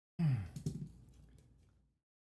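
A man's voiced sigh, falling in pitch, then a couple of light clicks from the plastic replica gun parts being handled.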